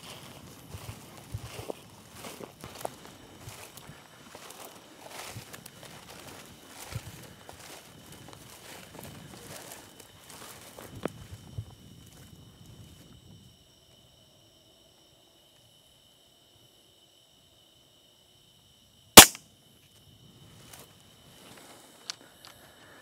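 Footsteps crunching and rustling through dry wheat stubble for about 13 seconds, then quiet, then a single loud rifle shot about 19 seconds in.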